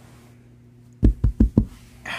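Four quick, dull thumps on a full-size memory foam mattress, a hand patting its surface, starting about a second in.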